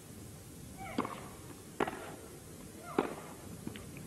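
Tennis rally: racket strikes on the ball, three sharp pops, the serve about a second in, the return under a second later and another shot about a second after that. Faint court ambience lies underneath.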